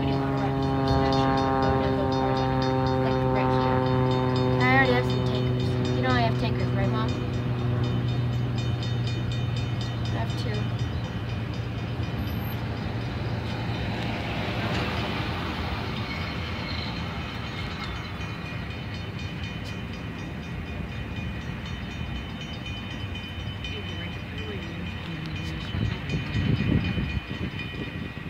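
A freight train's multi-chime horn holds a chord that slowly falls in pitch and fades over the first eight seconds or so. Under it and after it comes the steady rolling rumble of autorack freight cars passing on the rails, slowly getting quieter.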